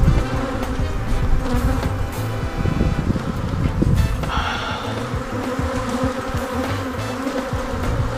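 Honeybees buzzing over an open hive box, a dense, steady hum of many bees, with a low uneven rumble underneath and a few brief knocks.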